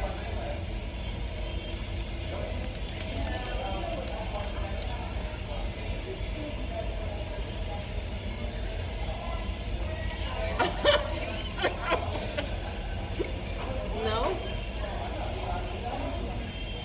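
Restaurant background: faint voices and a steady low rumble, with a few short sharp clicks or crackles about eleven and twelve seconds in.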